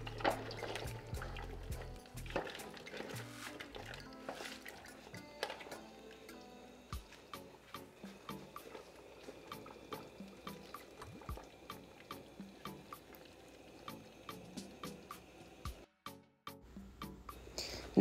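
Soft background music over faint wet liquid sounds: a wooden spoon stirring shrimp into steaming soup broth, then thick blended okra poured into the pot. Short clicks and drips run through it.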